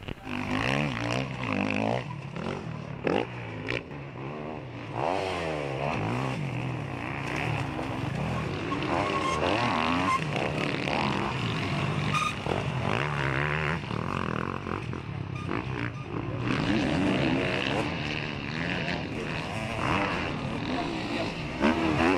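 Off-road dirt bike engine revving, its pitch rising and falling as the rider works the throttle and shifts on a dirt cross-country track.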